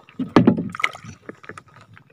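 Shallow sea water splashing and sloshing as a hand reaches in, loudest about half a second in, followed by scattered small clicks and ticks.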